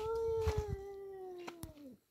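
A tomcat's single long yowl at a rival tomcat, a warning in a standoff between two males. It rises at the start, holds, then slowly sinks in pitch and stops just before the end.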